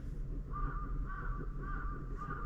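A bird calling outside in a quick series of four short calls, starting about half a second in.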